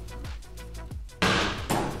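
Background music with a steady beat; about a second in, a sudden loud knock as a stainless steel saucepan is set down on a glass hob.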